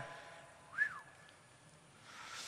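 A short whine about a second in that rises and then falls in pitch, with a faint steady tone trailing after it: the motors of the Bina48 robot head moving her head.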